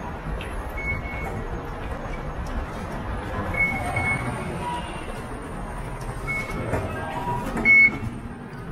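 Busy rail-station fare-gate hubbub with footsteps and a steady background din, punctuated by several short high beeps from the ticket gates as tickets are used, the loudest one near the end.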